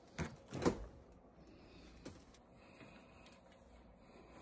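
Refrigerator door being handled: two soft thumps about half a second apart, the second louder, as the door is pulled open, then a faint click.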